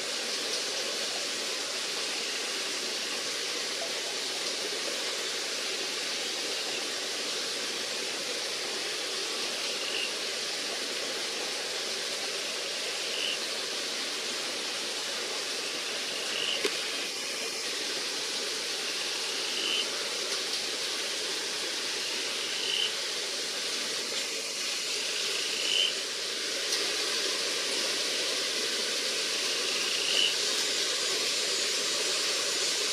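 Steady hiss of tropical forest ambience, with a short high note repeated about every three seconds from about ten seconds in.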